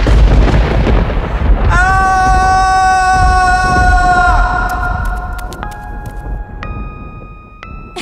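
A loud thunder crash rumbling on and slowly dying away. A long held eerie tone sounds over it and slides down at its end. Near the end come single sustained spooky notes about one a second.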